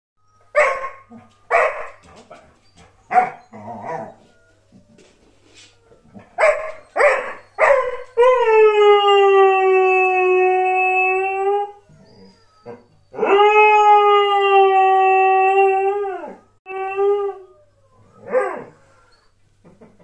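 Border collie howling: a run of short, sharp barks, then two long howls of about three seconds each, held steady in pitch and dropping off at the end, followed by a couple of brief howls.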